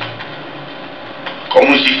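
Steady background hiss and hum, then a voice speaking loudly about one and a half seconds in.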